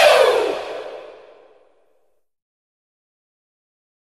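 A whoosh sound effect with a falling pitch sweep, fading out within about two seconds, then silence.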